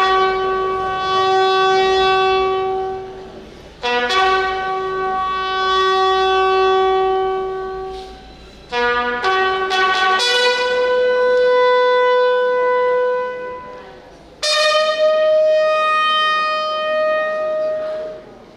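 A bugle call played slowly in four phrases. Each phrase opens with a few short notes and ends on a long held note, and the later held notes step higher. It is sounded as a salute to the dead.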